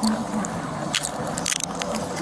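Metal handcuffs jingling and clicking as a person's wrists are cuffed behind her back, with a few sharp clicks about a second in and again around a second and a half, over the steady noise of passing road traffic.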